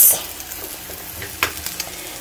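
Eggs frying in a pan: a steady sizzle with a few short crackles about halfway through.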